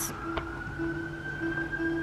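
Distant emergency-vehicle siren wailing: one long, high tone that glides slowly in pitch.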